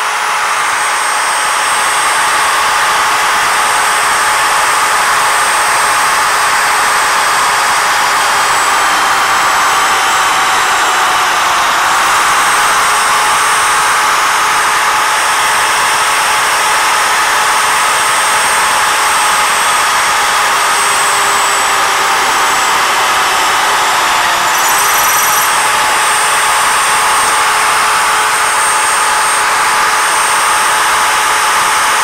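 Electric drill motor of a CNC drill head running loud and steady while drilling dry, without coolant, into square metal tubing at a slow two-inch-a-minute feed. Its whine sags slowly in pitch and snaps back up twice.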